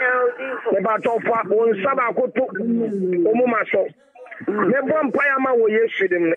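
Speech only: a voice talking fast and continuously, with a brief pause about four seconds in, sounding thin and cut off at the top, as over a radio broadcast.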